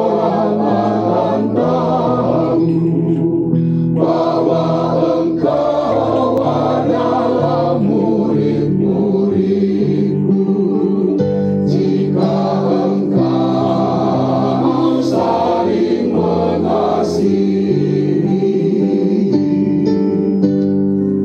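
A church choir singing a hymn in harmony, with held chords that change every second or so.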